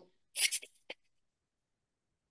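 A woman vocally imitating a magpie's harsh chattering call: one short raspy burst of about a third of a second, followed by a small click just before a second in.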